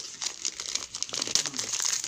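Christmas wrapping paper crinkling in the hands as a small wrapped gift is squeezed and worked open: a quick run of papery crackles.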